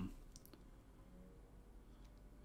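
Near silence: room tone, with the tail of a hummed "hmm" at the very start and a couple of faint short clicks about half a second in.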